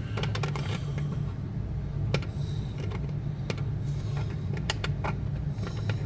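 Scattered light clicks of fingertips handling the small 3D-printed plastic cabinet doors of a scale model workbench, over quiet background music.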